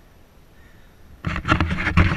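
Low, steady background noise, then a little over a second in, sudden loud rubbing and knocking from a hand-held camera being picked up and handled.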